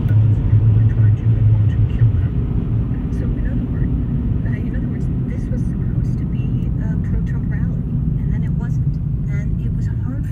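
Steady low road rumble of a car driving at freeway speed, heard from inside the cabin, heavier in the first couple of seconds. Quiet voices come in over it from a few seconds in.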